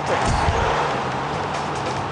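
Arena crowd cheering loudly, with a dull low thud under it near the start.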